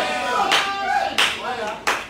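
Singing voices with hand claps on the beat, three claps about two-thirds of a second apart; the singing fades near the end.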